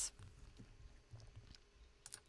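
Near silence: room tone with a faint low rumble.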